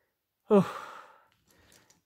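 A man's sighing 'oh', falling in pitch and trailing off into breath, about half a second in. A few faint clicks follow near the end.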